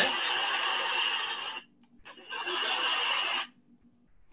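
Canned audience reaction: two bursts of recorded crowd noise, laughter-like, the first about a second and a half long and the second a little shorter, each cutting in and out abruptly.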